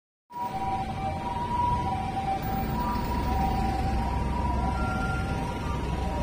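Street ambience: a steady low rumble of road traffic with two steady high tones held over it. The tones run level, without a siren's rise and fall.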